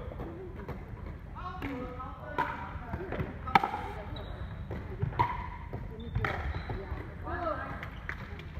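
Pickleball paddles striking a plastic ball in a rally, a series of sharp pops about a second apart with the loudest about three and a half seconds in, mixed with short squeaks of sneakers on the wooden court floor.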